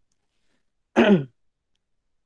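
A person clears their throat once, briefly, about a second in; the rest is near silence.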